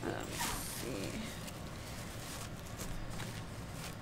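Zipper on a black diaper backpack being drawn open, with the rustle of the bag being handled.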